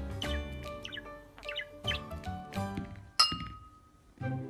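Light background music with short bird chirps over it. About three seconds in comes one sharp clink with a ringing tail, after which the sound drops away.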